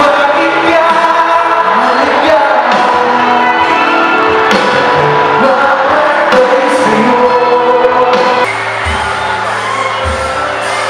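A rock band playing live in a large hall, with a singer's vocals over the full band and some shouts from the crowd. About eight and a half seconds in, the sound cuts abruptly to a slightly quieter passage of live band music.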